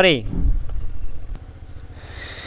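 A low rumble that fades away within about a second and a half, right after a spoken word ends.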